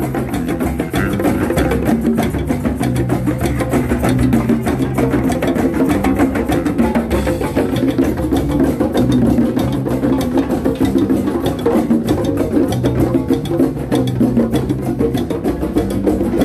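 Drum circle of many hand drums, djembes and congas, played together in a fast, dense groove over a repeating low bass line.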